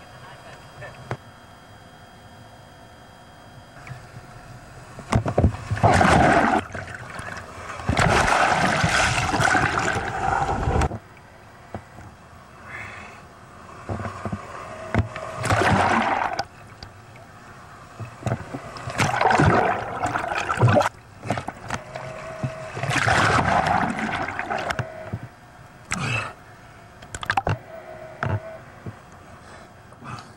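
Surf water washing and sloshing over a waterproof camera housing, in about seven loud rushes of one to three seconds each, with lower water noise between them.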